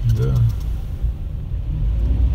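Steady low rumble of a car driving along, heard from inside the cabin.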